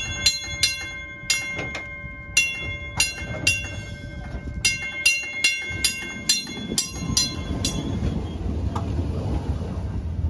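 PCC streetcar's gong clanging in quick, irregular runs of strikes, each note ringing on, about seventeen strikes over the first eight seconds. Then the streetcar's low rumble as it rolls away.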